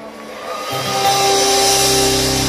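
Live band music: a held chord dies away, then about two-thirds of a second in electric guitar and bass come in loud on a new sustained chord that swells and holds.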